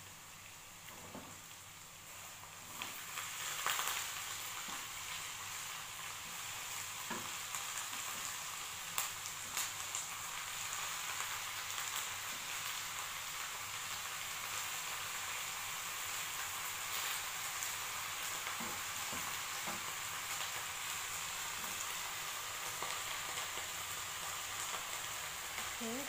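Hot pan of diced peppers and aromatics sizzling steadily as raw whole shrimp are laid into it one by one; the sizzle grows louder about three seconds in, with a few sharp clicks.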